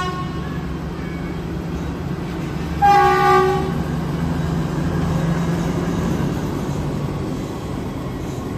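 Diesel locomotive running with a steady low rumble that swells and then eases, sounding one short horn blast about three seconds in.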